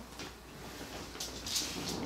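Thin steel wire being drawn slowly through the old double-sided foam tape under a guitar knee support, cutting it: a few short, faint scraping rasps, the clearest about a second and a half in.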